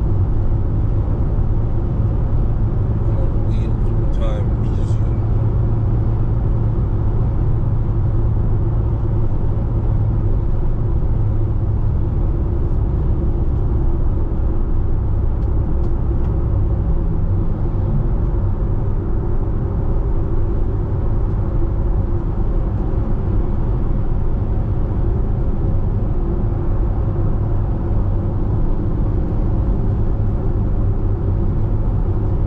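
Steady low rumble of tyre and engine noise inside a vehicle cruising at highway speed on the interstate.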